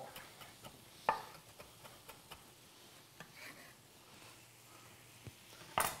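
Chef's knife chopping parsley on an end-grain wooden board: sparse, irregular light taps, with one louder knock about a second in and a sharp knock just before the end. A faint sizzle of pans on the hob lies underneath.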